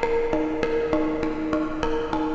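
Mutable Instruments Plaits Eurorack module on its inharmonic string model, heavily damped, playing short, pitched percussive plucks on every eighth note, about three a second. Each note falls at random on one of two pitches, D-sharp or A-sharp.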